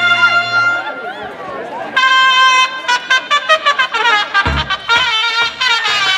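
Brass band music for the chinelo dance (brinco del chinelo). A long held note dies away about a second in, and after a short lull a new phrase of quick, short trumpet notes starts about two seconds in. A low drum hit lands about four and a half seconds in.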